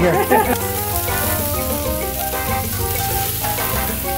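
Cheese-topped beef burger patties sizzling on the grate of a gas grill, a steady hiss, with background music of held notes playing over it.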